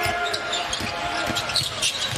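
A basketball dribbled on a hardwood court, with repeated short bounces over the murmur of an arena crowd.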